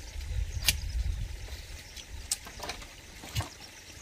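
A few sharp clicks, about a second apart, from a knife working bamboo strips, over a low rumble that fades after the first second or so.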